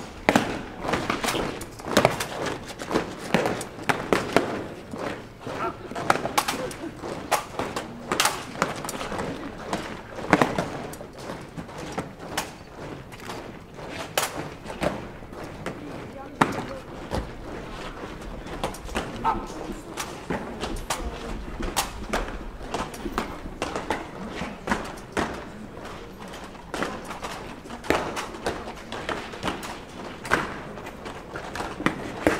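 Soldiers' boots striking the road as they march and take up position, a scatter of sharp irregular thuds that are densest in the first few seconds, over the indistinct chatter of an onlooking crowd.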